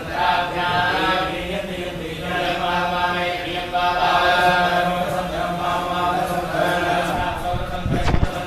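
Hindu devotional chanting: voices intoning in long held notes with short breaks between phrases. A low thump of camera handling comes at the very end.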